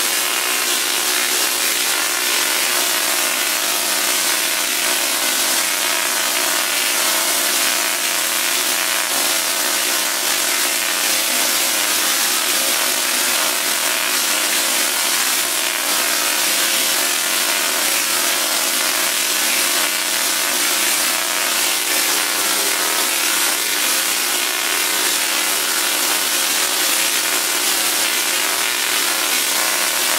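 BTC50 table-top Tesla coil firing, its sparks streaming from the top load into open air: a loud, steady, harsh spark buzz with a hum of evenly spaced low tones under it.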